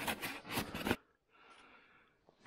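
Plastic snow shovel scraping and chopping into heavy, wet snow in several short strokes during the first second, then quiet.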